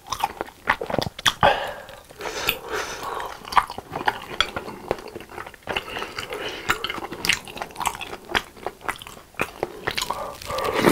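Close-miked chewing of spicy tteokbokki rice cakes in sauce: wet, sticky mouth sounds with many sharp, irregular clicks and smacks.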